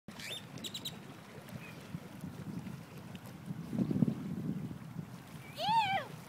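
Wind buffeting the microphone, with a stronger gust about four seconds in, a few short high bird chirps in the first second, and near the end a short rising-then-falling animal call.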